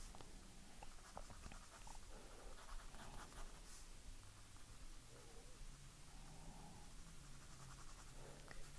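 Faint scratching of a graphite pencil shading on drawing paper, with a few light ticks of the lead on the page.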